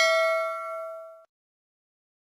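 A bell 'ding' sound effect for a notification bell being clicked, ringing with a few clear tones and dying away about a second in.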